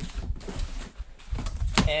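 Flaps of a thin cardboard box being pulled open by hand: cardboard scraping and rustling, with a sharp knock near the end.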